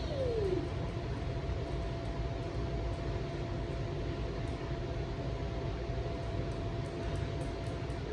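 Steady low rumble of room background noise with a faint constant hum tone throughout.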